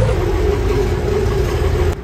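Bus engine running, a low rumble under a steady drone.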